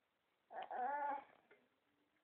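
An eight-month-old baby making one short, whiny vocal sound about half a second in, lasting under a second.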